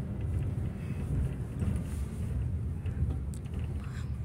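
Steady low rumble of a car, heard from inside the cabin while it is driven.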